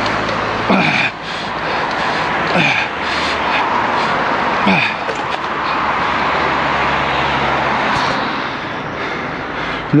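Wind rushing over the microphone and tyre noise from a bicycle ridden along a roadside path, with a low engine hum from passing traffic in the second half. Three short falling voice sounds come about two seconds apart, grunts or sighs of effort from the rider.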